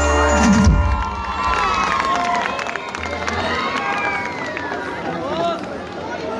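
Band music stops less than a second in, and a large concert audience cheers and shouts, with high calls rising and falling over the crowd noise.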